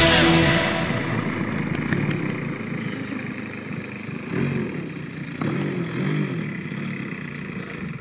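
Desert Aircraft gasoline engine of a large radio-controlled aerobatic biplane running at low throttle while it taxis. Its pitch swells up briefly about four and a half and five and a half seconds in. Music fades out at the start.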